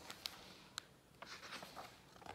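Faint rustling of a hardcover picture book's paper pages as the book is handled and lowered, with two soft ticks in the first second.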